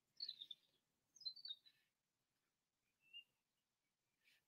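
Near silence: faint room tone, with a few faint high chirps in the first second and a half and one more brief faint tone about three seconds in.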